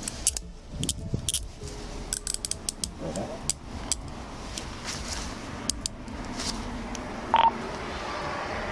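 Handcuffs ratcheting shut on a man's wrists: quick runs of sharp clicks through the first three seconds, then scattered clicks, and a short beep near the end.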